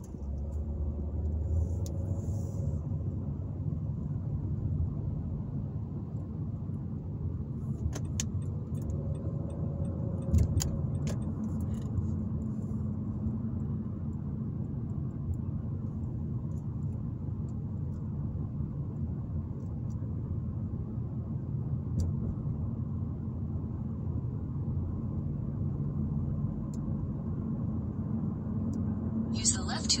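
Steady low road and engine rumble heard inside a car's cabin while driving in freeway traffic, with a few light clicks about eight to eleven seconds in.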